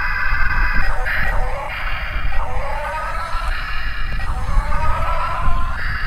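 Simulated engine sound played from the speaker of a Yigong YG258C RC excavator: a steady electronic engine drone, with a rising whine twice as the upper body is swung from side to side.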